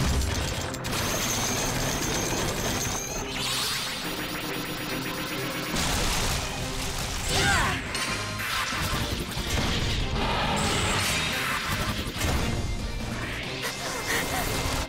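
Animated battle sound effects: repeated crashes and impacts over background music.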